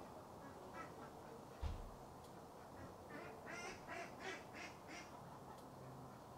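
Ducks quacking faintly, a run of about half a dozen quacks in the second half, with a soft low thump a little under two seconds in.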